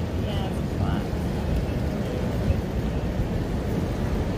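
Steady low rumble of city street traffic, with brief faint snatches of voices near the start.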